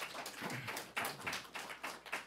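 Audience applauding: a dense, uneven patter of many hand claps.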